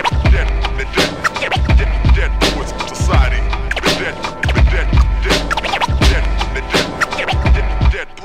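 Boom bap hip hop instrumental beat with heavy bass and drums in a repeating loop, with turntable scratches over it. The beat breaks off at the very end.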